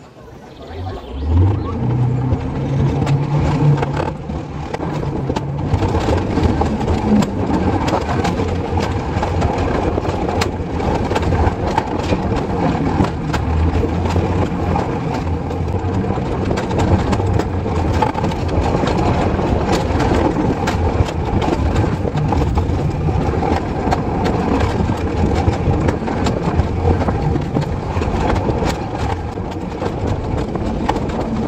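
Alpine coaster sled running down its steel tube rail track: a steady rumble of the wheels on the rails with frequent small knocks and rattles, building up about a second in.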